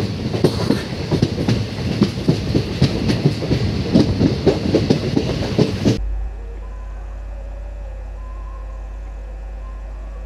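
Train passing close at speed: a rush of noise with rapid, uneven clicks and knocks of wheels over the rails. It cuts off abruptly about six seconds in, leaving a low steady hum.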